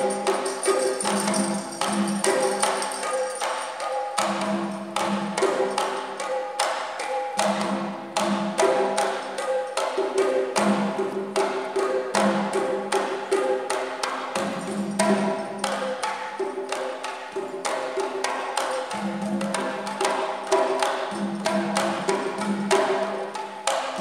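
Three batá drums (okónkolo, itótele and iyá) playing a fast interlocking rhythm: dense sharp strokes with deeper pitched open tones recurring in phrases of about a second.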